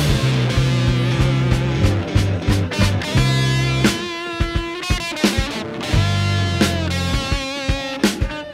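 Instrumental rock passage: electric guitar lines over bass guitar and drums, with no vocals.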